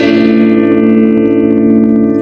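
Electric guitar (LTD AX-50) played through a Boss Blues Driver BD-2 overdrive pedal with its gain turned up a little, into a Quake GA-30R amp, giving a light crunch. A chord is struck right at the start and left to ring, slowly fading.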